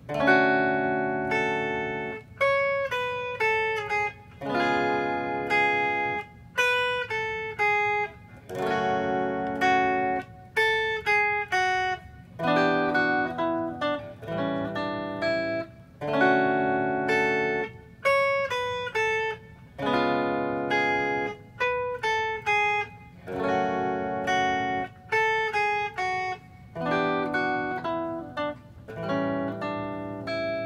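Ibanez AZES40 electric guitar playing chord-and-melody: chords with a melody line on top, in short phrases with brief pauses about every two seconds.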